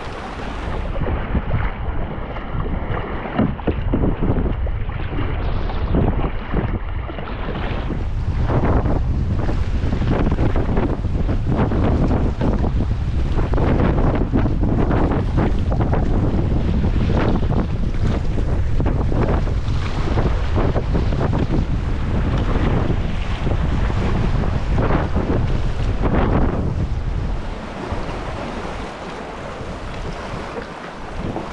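Wind buffeting the camera microphone over sea water surging and splashing around rocks and kayak paddles. The wind rumble grows heavy a few seconds in and eases near the end.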